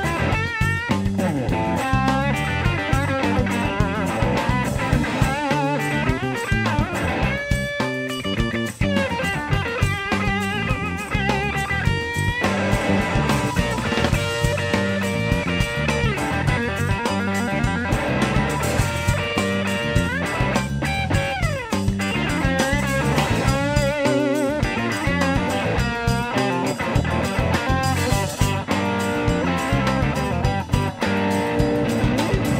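Blues-rock trio playing live: an electric guitar takes the lead over bass and drums, with bent notes and wavering vibrato.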